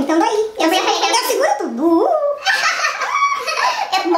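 Several women laughing and chattering.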